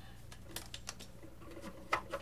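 A few faint, short clicks and one slightly louder tap near the end, from hands handling a plastic scale model, over a steady low hum.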